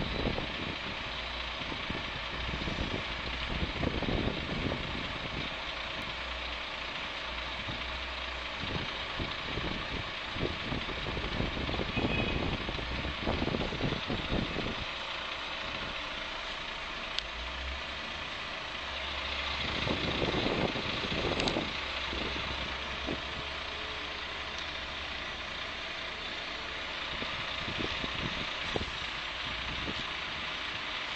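Heavy diesel truck engine idling steadily, heard from inside a truck cab, with a few brief louder swells.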